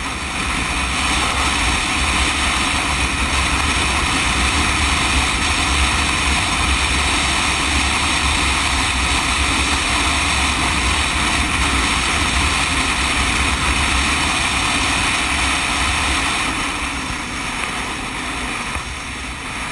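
Steady rush of wind on a motorcycle-mounted camera's microphone at highway speed, over a low drone of engine and tyre noise. It eases a little near the end.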